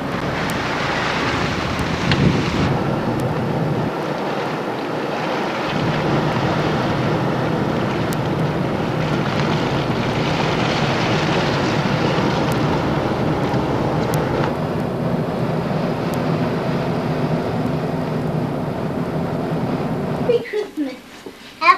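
A car driving: steady road and engine noise heard from inside the car, with a rushing hiss that swells and fades.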